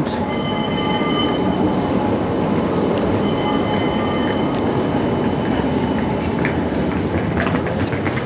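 West Midlands Metro tram running past on street track, a steady rolling rumble, with two spells of a high, steady chord of tones, one just after the start and one about three seconds in.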